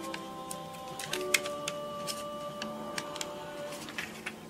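Quiet background music of held chords, shifting about a second in and fading out near the end, with light clicks and taps from handling a paper cupcake liner and glue on the table.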